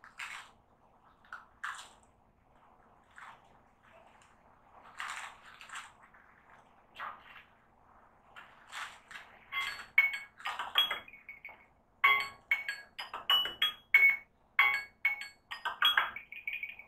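A child chewing crunchy snack pieces close to the microphone: irregular crunches, sparse and soft at first, then louder and quicker in the second half.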